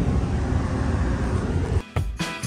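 Steady low rumble of road and engine noise inside a moving car's cabin. It cuts off abruptly just before the end.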